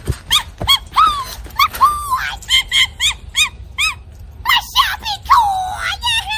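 Puppies yelping in a quick string of short, high yips, ending in a longer whine near the end.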